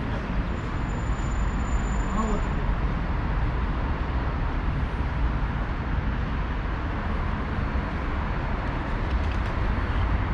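Steady city traffic noise, heaviest in the low rumble, with a thin faint high tone for about two seconds near the start.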